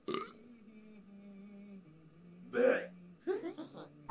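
Short vocal sounds from a person, not words: a brief one at the start, a louder one about two and a half seconds in, then a quick string of shorter ones near the end.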